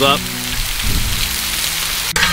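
Bison ribeye steaks, sliced onions and zucchini sizzling on a flat-top griddle on high heat, a steady crackling hiss.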